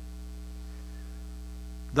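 Steady electrical mains hum, a low buzz with a row of evenly spaced overtones, carried on the sound system's recording.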